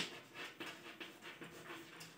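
Chalk writing on a chalkboard: faint, short scratching strokes of chalk as letters are written, a few each second.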